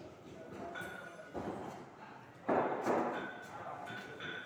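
Damp granulation mass being rubbed by hand through a brass sieve: fingers scraping the granules over the wire mesh. There is a sudden, louder scrape or thud about two and a half seconds in.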